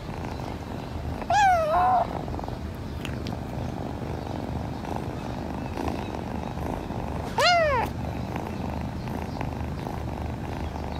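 A kitten purring steadily, with two short meows about six seconds apart, each rising and falling in pitch.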